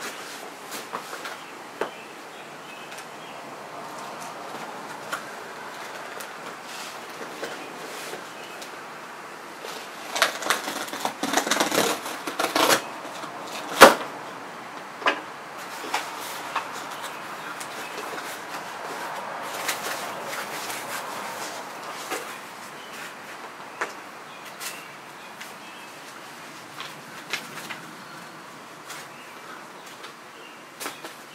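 Cardboard shipping box being opened by hand: scattered scrapes and clicks of the cardboard, a stretch of ripping and rustling about ten to thirteen seconds in, and a sharp knock just after it. Packing paper rustles faintly later on.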